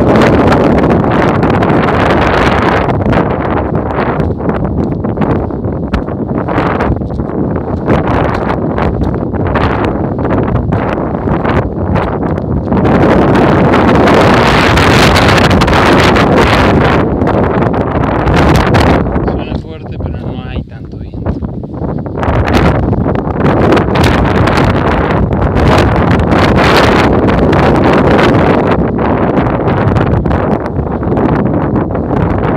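Strong wind buffeting the microphone, loud and gusting, with a brief lull about twenty seconds in.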